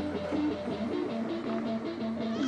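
Amplified electric guitar playing a steady melodic line of single picked notes that step quickly from one pitch to the next.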